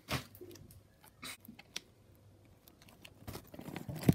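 Paper microwave-popcorn bag crinkling as it is handled: a few short, separate rustles, the sharpest just at the start.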